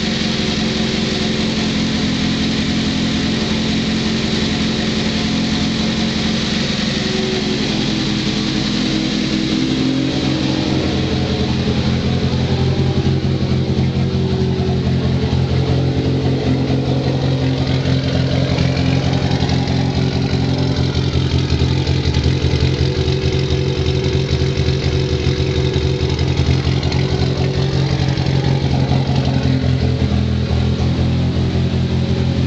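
Turbocharged VW Corrado 16-valve four-cylinder engine with a Garrett GT3076 turbo, idling steadily. About ten seconds in, the sound becomes fuller and a little louder.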